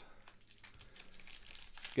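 Foil wrapper of a trading card pack crinkling faintly as it is handled, growing a little louder toward the end.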